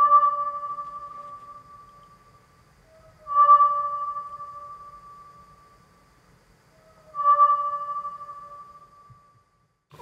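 Reconstructed recording of the South Island kōkako's call: three long, clear, bell-like notes about three and a half seconds apart, each fading away slowly.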